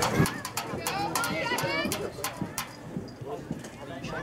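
Players' and spectators' voices calling out across an open playing field during play, with a run of short sharp taps over the first two or three seconds.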